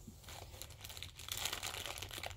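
Clear plastic packaging bag crinkling as it is handled, in small irregular crackles that grow a little louder after about a second.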